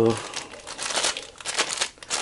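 A clear plastic bag crinkling as it is handled, with a keypad light switch inside: a dense run of small crackles.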